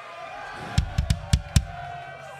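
A drum kit struck live on stage: a quick run of about five kick and snare hits in under a second, over a faint held tone.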